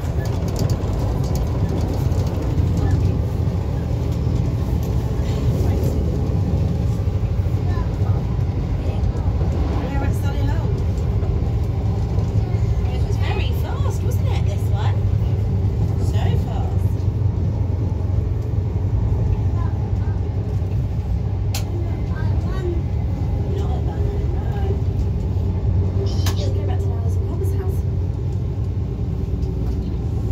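Steady low rumble of a diesel-locomotive-hauled passenger train running along the line, heard from inside the coach.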